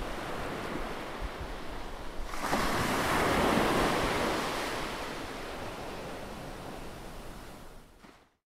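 Rushing noise like ocean surf: one swell comes in about two and a half seconds in, then slowly fades away.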